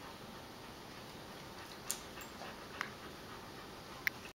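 Dogs at play on a tile floor, mostly quiet, with two short sharp dog sounds about two and three seconds in.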